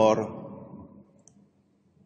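A man's speech voice ends a word at the very start, then its sound fades into a pause of near silence, with one faint, tiny click about a second in.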